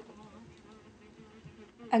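A quiet, steady, bee-like buzz from a track playing over speakers: a sampled recording of a dog, processed until it sounds like a buzzing insect.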